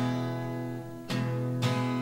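Acoustic guitar strumming chords in a song, each chord ringing on; a fresh chord is struck about a second in and again shortly after.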